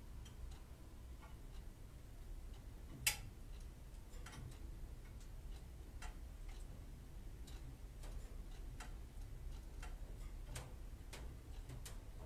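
Faint, irregular clicks and ticks, about one a second, over a low steady hum, with one sharper click about three seconds in.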